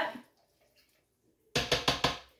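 After a near-silent pause, a quick run of sharp knocks begins about a second and a half in: a spatula rapping and scraping against the stoneware crock pot insert.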